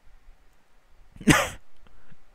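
A man's held-in laugh breaking out in one short, explosive burst of breath a little over a second in.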